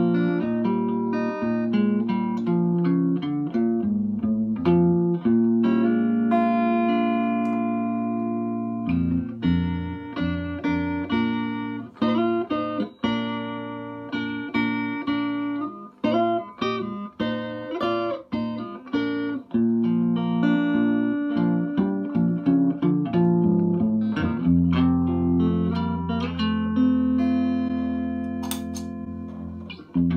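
Guitar played through a 1963 Egmond V1020 tube combo amp, a 5-watt single-ended EL84 amp made by Philips, just after servicing: a continuous run of plucked notes and chords, with low notes ringing out over the last few seconds.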